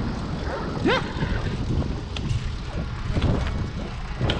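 Steady low rumble of wind buffeting the microphone and bicycle tyres rolling on asphalt, from a fixed-gear bike being ridden along a street.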